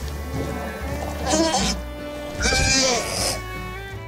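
Two loud animal calls of a computer-animated dome-headed pachycephalosaur dinosaur, the second longer, with wavering pitch, over background music.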